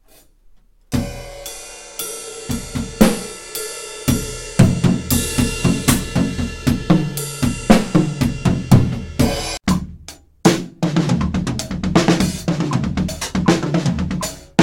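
Drum kit played with sticks: a fast linear chop spread across snare, bass drum, hi-hat and cymbals. It starts about a second in, breaks off briefly near ten seconds, then goes on.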